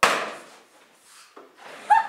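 A sharp bang on an old wooden door, fading out over about half a second, as the door is pushed open.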